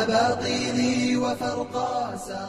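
Intro music: a voice chanting a melodic line with sliding, ornamented pitch over a steady held drone.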